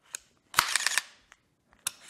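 AR-15 trigger being dry-fired with a Mantis Blackbeard auto-reset unit installed: sharp mechanical clicks of the trigger breaking and the Blackbeard resetting it. There is a light click near the start, a quick run of several louder clicks about half a second in, and another click near the end.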